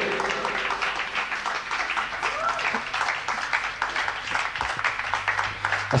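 Live audience applauding, a steady clatter of many hands clapping, for a song that has just finished.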